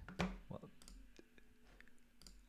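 A few faint, short computer mouse clicks, spaced apart.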